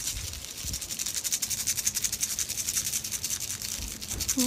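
A hand rattle or shaker shaken quickly and steadily, a fast, even, bright rattling with many strokes a second.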